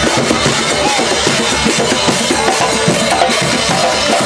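A percussion group playing a dense, driving rhythm on congas and other hand drums, with a hand cymbal crashing over it.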